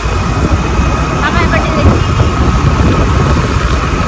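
Wind buffeting the phone microphone on a moving scooter, a loud, uneven low rumble mixed with the scooter's running and surrounding road traffic.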